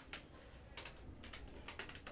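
Computer keyboard typing: about ten faint, light keystrokes at an uneven pace.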